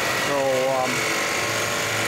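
Vincent six-inch screw press, driven by a 5 hp electric motor at 90 RPM, running with a steady mechanical hum and a thin high steady tone.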